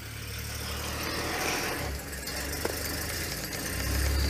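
A game-drive vehicle's engine running at low revs, a steady low rumble.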